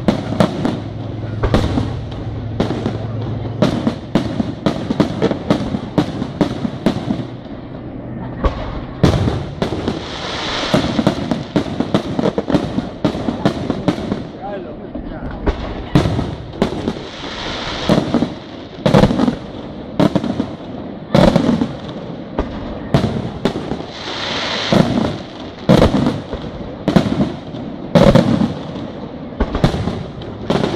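Professional fireworks display: aerial shells bursting in rapid succession, several bangs a second in the first half, then heavier bangs about once a second.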